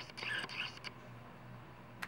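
A few light plastic clicks in the first second, from a Harry's Truman razor's push-button blade release as the blade cartridge is pushed off the handle; after that, quiet.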